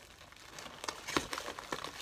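Cardboard shipping box and its packing being handled: irregular rustling and crinkling with small clicks and scrapes, quiet at first and busier from about a second in.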